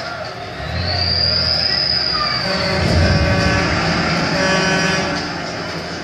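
Drama series soundtrack played back on a screen and recorded in the room: music and sound design with a deep rumble that swells in about a second in, and a high thin tone that rises and falls over the first couple of seconds.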